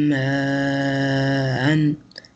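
A man's voice holding one long vowel at a steady pitch during Quran recitation, the drawn-out elongation (madd) of a long vowel. It stops near the end.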